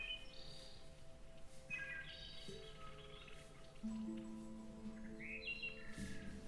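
Quiet, calm background music of long held tones with birdsong chirps mixed in, the chirps coming at the start, around two seconds in and again near the end.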